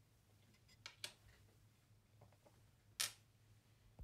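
Near-silent room with a few light clicks of small objects being handled: two close together about a second in, a few faint ticks a little later, and one sharper click about three seconds in.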